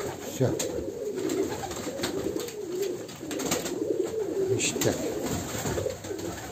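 Several domestic pigeons cooing at once, a continuous overlapping warble, with a few short sharp clicks scattered through it.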